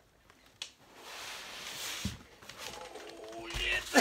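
Foam packing and cardboard rubbing and scraping as a heavy foam-wrapped box is worked up and out of a cardboard shipping carton, with a knock about two seconds in.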